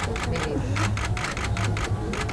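Still-camera shutters clicking rapidly and irregularly, with voices murmuring underneath.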